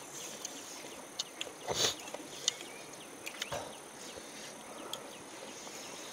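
Steady high buzzing of a chorus of insects, such as crickets or cicadas, from the surrounding forest. A few short sharp clicks and one fuller knock about two seconds in stand out over it.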